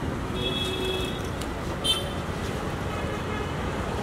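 Road traffic noise: a steady rumble of passing vehicles, with a short high-pitched tone in the first second and a sharp click about two seconds in.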